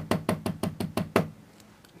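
A brass hair stacker tapped rapidly on a desk, about eight knocks a second, stopping a little over a second in. The tapping settles the tips of a bunch of deer hair level inside the stacker.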